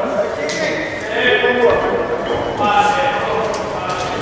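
Several people in a gymnasium calling out and talking at once, overlapping voices echoing in the hall.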